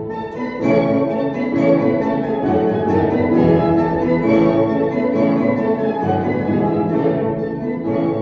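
Live classical music played by an orchestra with bowed strings, growing louder about half a second in and then playing on fully.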